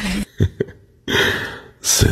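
A person's audible sharp breath in, a gasp, about a second in, fading over half a second, after two brief soft knocks.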